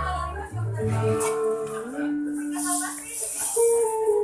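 A small live cafe band playing, with guitar and percussion, while people talk over the music.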